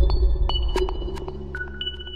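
Electronic logo sting: a deep bass hit fading slowly under a few sharp clicks and two bright, ringing pings, one about half a second in and a lower one near the end.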